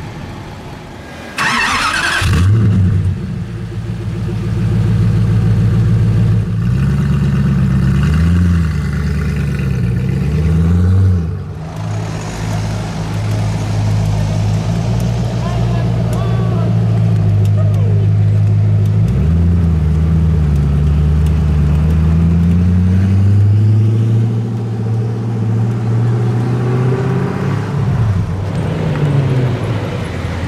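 Koenigsegg CCXR Special Edition's twin-supercharged V8 starting about two seconds in with a short loud burst, then idling with several quick rev blips before pulling away.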